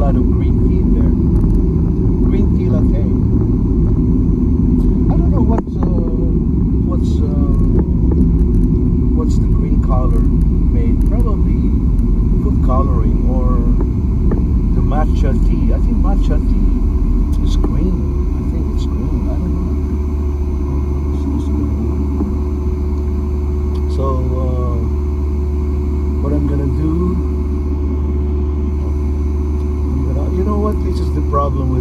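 Car cabin noise while driving: a steady low rumble of engine and road, with a low hum that grows stronger about two-thirds of the way through. A man's voice talks over it at intervals.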